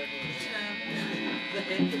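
Steady hum from live-band electric guitar amplifiers between songs, with faint voices and some quiet guitar picking.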